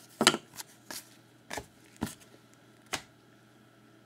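Trading cards handled by gloved hands: about six short slaps and clicks over three seconds as cards are slid apart and set down on a pile.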